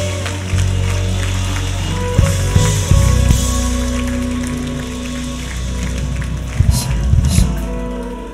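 Live church worship band playing behind the service: held chords over a steady bass line, with scattered drum hits.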